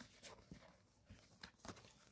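Near silence with a few faint, short ticks from playing cards being handled and fanned in the hands.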